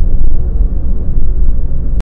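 Steady low rumble of a car in motion, heard from inside the cabin: road and engine noise. It cuts off suddenly at the very end.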